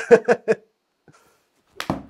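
Brief laughter, then near the end a single sharp smack of a golf club striking a ball off a hitting mat and driving it into a simulator's impact screen.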